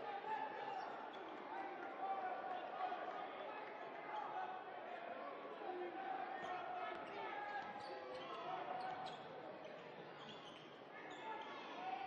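A basketball being dribbled on a hardwood court during live play, with voices echoing around the arena.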